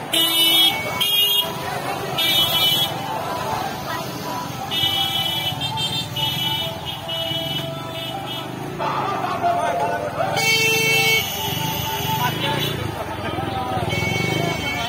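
Motorcycle horns honking in a series of blasts, mostly short with one held for a few seconds, over the chatter of a large crowd.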